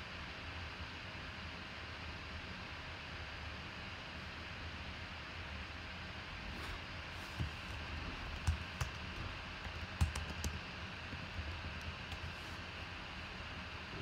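Faint computer keyboard typing and clicking over a steady low hiss, the keystrokes scattered through the second half.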